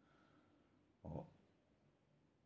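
Near silence, broken about a second in by a single short grunted syllable from a man, a quick "ó" (look).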